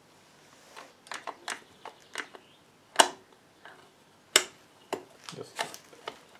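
Scattered metallic clicks and knocks from hands working the partly assembled aluminium crankcase of a Puch Z50 two-speed moped engine. They start about a second in, with two sharper knocks around the middle.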